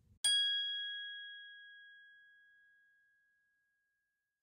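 A single bell-like ding, struck once about a quarter second in and ringing out as it fades over about three seconds.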